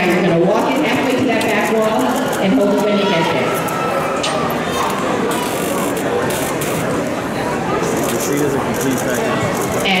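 Indistinct, overlapping voices of people in a large hall, talking and calling out, with no clear words. A few sharp clicks come around the middle.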